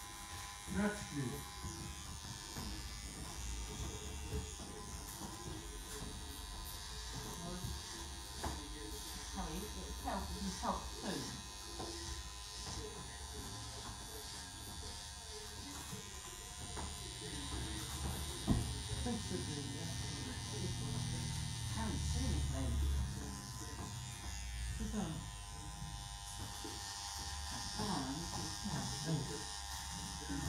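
Corded electric beard clipper running with a steady buzz as it trims a beard.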